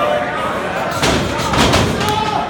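A cluster of heavy thuds about a second in, bodies hitting the wrestling ring, over shouting and chatter from the crowd.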